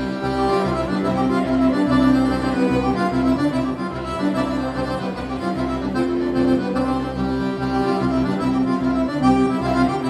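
Accordion playing a traditional dance tune, sustained chords over a steadily pulsing bass.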